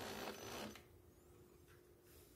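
A cordless drill mounted on a bicycle frame as a drive motor, running, then cut off about 0.7 s in as the trigger is released, leaving only a faint steady hum.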